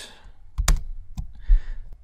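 A few separate computer keyboard key presses as a code cell is edited and run, the sharpest about a third of the way in.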